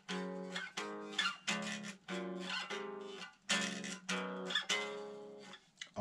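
Electric guitar playing a short chord cadence: about eight chords struck one after another in three short phrases, the last chord left ringing longer. It is the same cadence played three times from different intervals.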